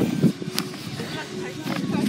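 Indistinct talking with the rubbing and a sharp click of a phone being handled, its lens covered by a hand.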